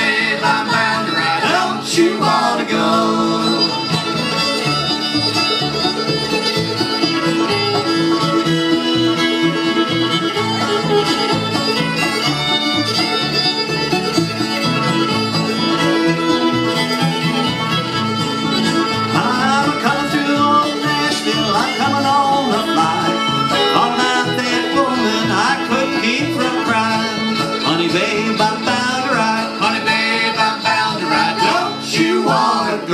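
Acoustic string band of fiddle, five-string banjo, acoustic guitar and upright bass playing an instrumental break, with no singing.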